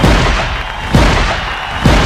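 Cinematic trailer boom hits: three sudden deep impacts about a second apart, each dropping quickly in pitch, over a rushing noisy wash.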